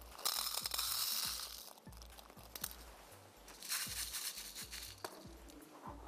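Small coloured stones poured from a plastic packet into a clear plastic container, a rattle of many small pebbles hitting plastic and each other. It comes in two pours of about a second and a half each, the second starting about three and a half seconds in.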